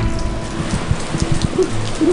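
Heavy rain pouring down onto a balcony patio, a dense steady hiss.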